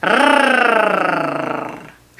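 A woman's voice holding a rolled Spanish R, an alveolar tongue trill, for about two seconds. Its pitch sinks slightly and it fades out near the end.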